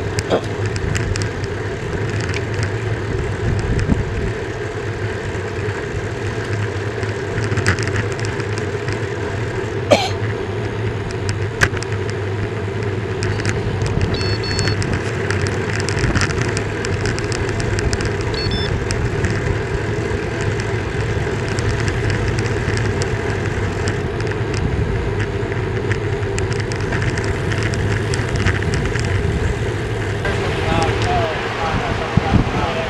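Steady rolling noise of a road bike picked up by a handlebar-mounted camera: tyre and wind noise at riding speed, with a few sharp clicks about a third of the way in.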